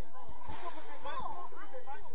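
Spectators' voices at a children's football match: indistinct overlapping chatter and calls from the sideline.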